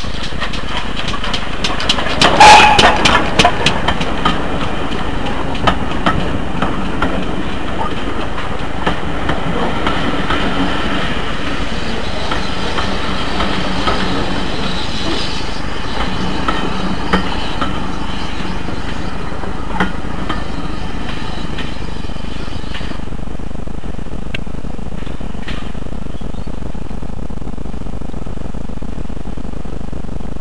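Ex-GWR prairie tank locomotive 5526 passing with a train of coaches. It is loudest as the engine goes by about two to four seconds in, then the coaches roll past with wheels clicking over the rail joints, fading away after about twenty seconds.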